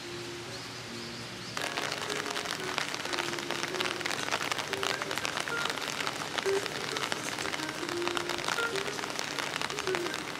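Steady rain pattering on wet stone and leaves, a dense hiss of fine drops that gets clearly louder about a second and a half in. A few soft music notes sound faintly underneath.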